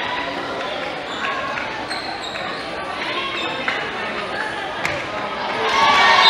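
Volleyball play on a hardwood gym floor, echoing in the hall: a single sharp smack of the ball being struck about five seconds in, with short high sneaker squeaks and a background of players' and spectators' voices that swell near the end.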